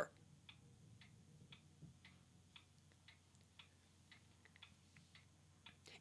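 Near silence: room tone with faint, evenly spaced ticks about twice a second.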